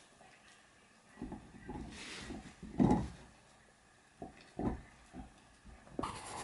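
Dog gnawing on a chew bone: irregular spells of chewing and grinding, one stretch in the first half and a shorter, sharper run near the end, with a pause between them.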